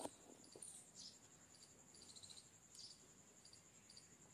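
Near silence with a cricket's faint, steady high trill running throughout and a few short high chirps, likely birds; a single soft click right at the start.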